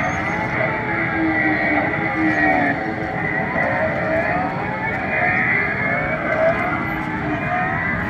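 Several kiddie go-karts running together, a steady overlapping motor drone whose pitches rise and fall as the karts speed up and slow around the track.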